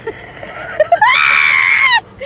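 A woman laughing: breathy giggling that breaks into a loud, high-pitched, held squeal of laughter about a second in, lasting about a second.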